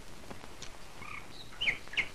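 Birds chirping: a handful of short, high chirps spaced irregularly over a faint background hiss.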